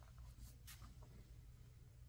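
Near silence: a faint steady low hum, with a few soft ticks about half a second in.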